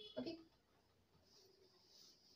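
Faint rubbing of a cloth duster wiping chalk off a blackboard, starting a little over a second in.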